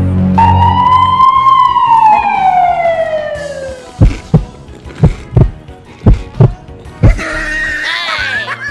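Edited-in sound effects: a whistle-like tone that rises briefly and then glides down for about three seconds, followed by paired heartbeat-style thumps, about one pair a second. Music with a swirling effect comes in near the end.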